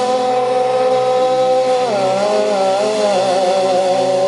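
Live rock band playing, led by a distorted electric guitar holding a long sustained note that bends down to a lower note about two seconds in and then wavers with vibrato.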